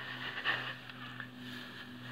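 Faint steady low hum of an idling engine, with light rustling close to the microphone.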